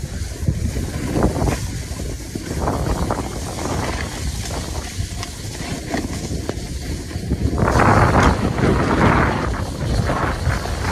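Wind buffeting a phone's microphone while snowboarding downhill, mixed with the hiss of the board sliding over snow. A louder rush comes near the end.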